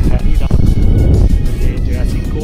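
Strong wind buffeting the camera's microphone, a loud, ragged low rumble, with a man's voice and background music over it.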